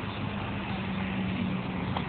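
Steady outdoor background noise with a faint, even low hum.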